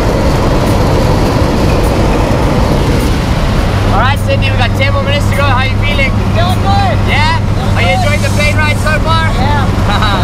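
Jump plane in flight: a steady rushing noise, then from about four seconds in the cabin, with the engines' steady low drone and voices calling out over it.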